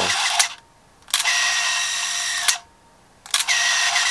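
A 1960s East German camera firing repeatedly, each time a shutter click followed by the whir of its motor winding the film on, about a second and a half per cycle. The shutter, once stuck, now releases every time after being freed with ethanol.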